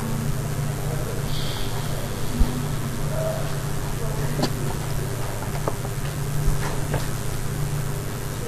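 Steady low electrical hum and hiss of the recording setup, with a few faint clicks scattered through the middle and a single sharper knock about two and a half seconds in.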